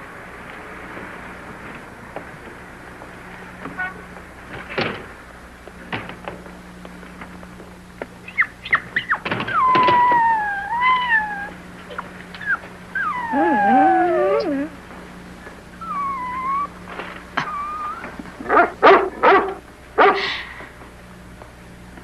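A dog whining, in several drawn-out, wavering whines, some of them falling in pitch, followed near the end by a few short sharp sounds.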